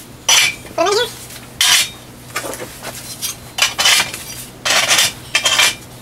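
AR500 steel dueling-target paddles clanking and clinking against the steel tree's pivot tubing as they are hung on, in about half a dozen separate metal knocks, some ringing briefly.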